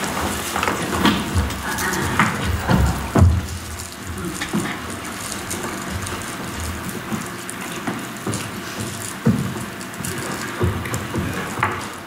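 Indoor room noise of people moving about in a church sanctuary: footsteps, rustling and scattered soft thumps over a steady background hush, busier in the first few seconds.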